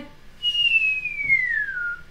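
A single whistled note gliding steadily down in pitch for about a second and a half, like a falling-bomb whistle, leading into a spoken 'bang'.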